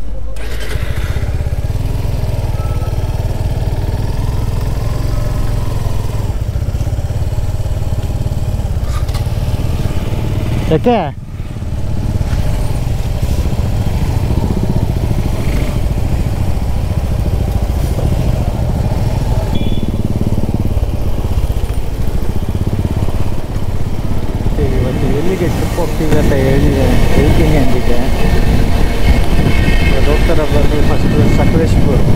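Motorcycle riding at speed with heavy wind rumble on the microphone. A brief falling tone comes about eleven seconds in, and the sound grows louder over the last few seconds.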